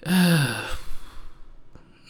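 A man's voiced sigh before answering a question. Its pitch falls over just under a second, and it trails off into a fainter breath.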